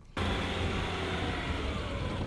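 Vehicle engine running steadily under load, with tyre and road noise, as a truck tows a van by a rope through snow.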